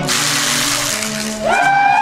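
Band music cuts off abruptly, followed by a rush of noise. About one and a half seconds in, a crowd of festival dancers starts shouting in loud calls that rise and fall.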